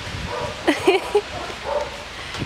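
A dog giving a few short yips and whines, mostly about a second in.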